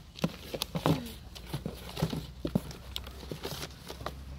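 Rummaging through a box of cosmetics products: irregular clicks and knocks of plastic bottles and packaging being moved and picked up.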